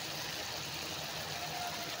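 Chicken drumsticks sizzling steadily in hot oil in an aluminium wok.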